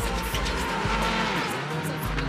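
Rallycross Supercar engines running hard as two cars race past, mixed under hip-hop music with a heavy bass beat.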